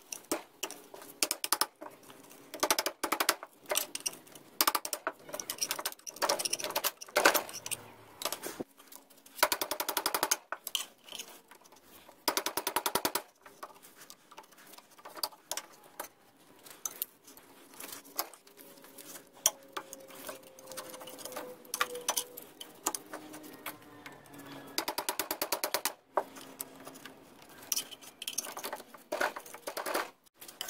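A screwdriver prying and scraping at the water pump base on a 1979 Evinrude 55 HP outboard's aluminium gearcase: a busy run of metal clicks, scrapes and knocks, with a few fast rattling runs of clicks.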